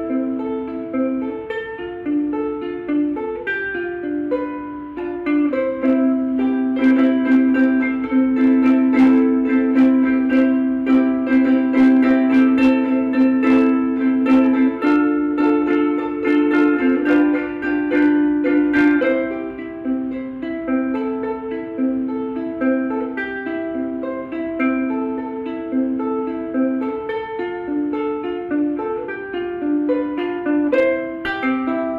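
Vangoa mahogany-laminate ukulele with Aquila strings being played solo, a chord-based tune picked note by note. It gets fuller and louder with many quick strokes across the strings through the middle stretch, then goes back to lighter picking.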